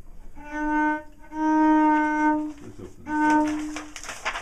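Cello playing three bowed notes on one pitch, each about a second long with short gaps between them, the middle note the longest.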